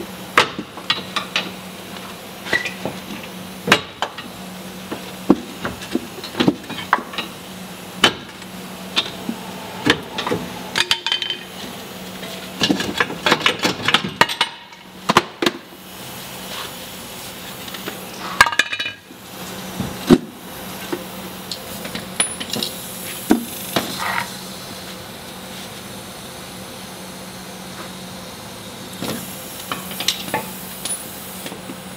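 Irregular metal clanks and knocks of hand tools against a Toyota Camry's steel lower control arm and its mounts as the arm is worked free, with dense clusters of knocks about halfway through and again a little later, then a quieter stretch near the end.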